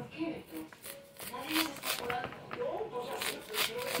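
Kitchen knife blade scraping the kernels off a fresh ear of corn, several short scraping strokes.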